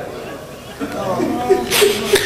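A man's voice in a lull between sentences, quiet at first and then softly resuming, with a short breathy burst near the end.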